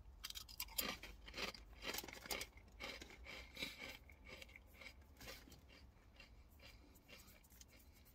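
A person chewing a mouthful of Ruffles ridged potato chips: faint, irregular crisp crunches, coming quickly at first and thinning out over the last few seconds.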